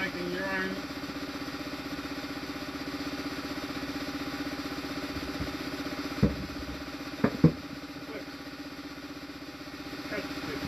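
A plywood box knocking against a wooden workbench as it is turned over and set down: one knock a little past halfway, then two quick knocks about a second later, the last the loudest. A steady low mechanical hum runs underneath.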